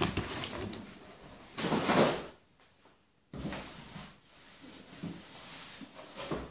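Cardboard box and packaging being handled and rustled, with a louder burst of rustling about one and a half seconds in and a brief quiet gap just after.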